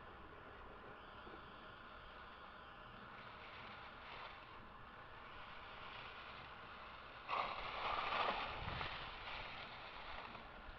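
Skis scraping over firm snow: a faint steady hiss, then about seven seconds in a sudden louder scraping rush lasting about two seconds as a skier carves past close by, fading away.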